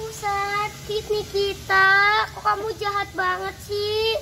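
A child's high voice in a string of short, held notes at a mostly level pitch, some longer than others, with the longest and loudest about halfway through.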